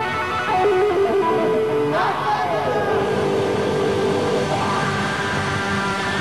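Live rock band playing, with electric guitar over drums and a falling sweep in pitch about two seconds in.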